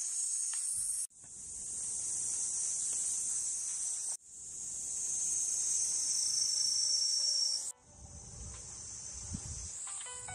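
A loud, steady chorus of summer cicadas, a high buzzing hiss that breaks off suddenly twice and comes straight back. Near the end it is fainter, with a low rumble of wind on the microphone.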